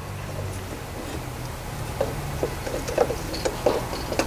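Light metallic clicks and knocks as an exhaust manifold is worked into place over its studs on the cylinder head, starting about two seconds in, over a steady low hum.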